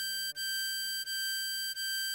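Harmonica playing the same high note, blow hole 9 (G), over and over with brief breaks between the notes. It is a thin, nearly pure tone, with a faint low sustained tone underneath.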